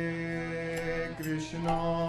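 Harmonium holding sustained notes under a voice chanting a devotional bhajan, with the pitch changing near the end.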